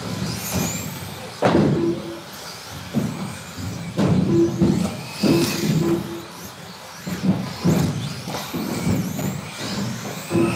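Electric two-wheel-drive RC racing buggies running on a carpet track: the high whine of their motors rising and falling as they accelerate and brake, with sharp thumps and clatters of the cars landing jumps and hitting the track every second or two.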